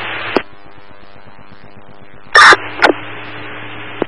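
Public-safety radio scanner between messages: a transmission drops off with a squelch click, leaving static hiss. Midway a radio keys up with a short, very loud burst and a second click, then an open carrier with a low hum runs until another squelch click at the end.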